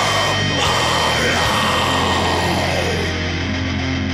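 Heavy metal music in an instrumental stretch with no vocals: dense distorted guitars over a sustained low end, with gliding, bending notes in the middle range. In the last second or so the highest frequencies drop away, leaving a held low note.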